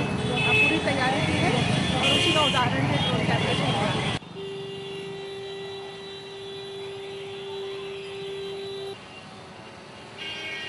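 A woman speaking over street traffic noise; about four seconds in it cuts off sharply to quieter street ambience carrying a single steady hum, which stops about nine seconds in.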